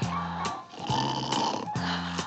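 A cartoon snore in two noisy breaths, the second longer, over light orchestral cartoon music with bass notes.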